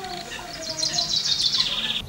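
A small songbird singing a rapid, high trill from about half a second in, running on for over a second.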